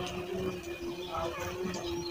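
Faint voice in the distance about a second in, over a steady low hum.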